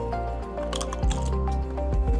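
Background music with held notes, over a person biting and crunching a potato chip, heard as a scatter of small crackling snaps.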